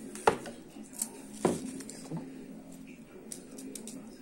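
Small metal carburetor parts clicking and knocking as a diaphragm carburetor is pulled apart by hand: a few sharp clicks in the first second and a half, the loudest about a second and a half in, then lighter ticks near the end.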